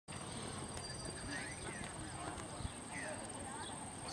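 Horse trotting on sand arena footing, its hoofbeats faint under a steady high-pitched whine, with one sharper knock about two and a half seconds in.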